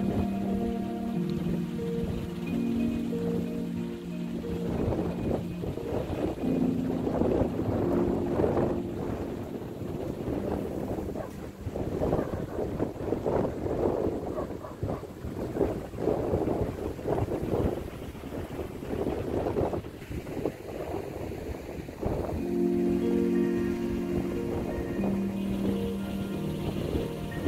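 Background music with long held notes, broken through the middle by gusty wind buffeting the microphone. The music comes back clearly near the end.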